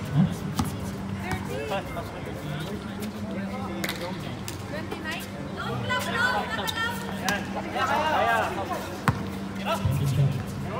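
Outdoor basketball court game sounds: a basketball bouncing on the hard court in scattered sharp knocks, with players calling out indistinctly mid-way and a steady low hum underneath.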